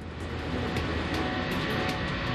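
Steady running drone of heavy automated container-carrier vehicles, with a few short light clicks, mixed with background music.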